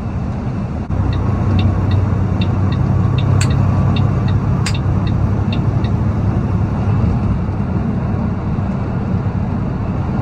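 Semi-truck engine and road noise droning steadily in the cab, stepping up in level about a second in. Over it, a light, regular ticking about two to three times a second for several seconds, with two sharper clicks in the middle.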